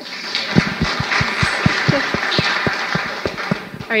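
Audience applauding, a dense patter of clapping with some close, sharper claps, fading out near the end.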